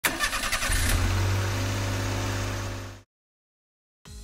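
Car engine start used as a logo sound effect: a quick run of cranking clicks in the first second, then the engine catches and runs with a steady low hum that fades out about three seconds in.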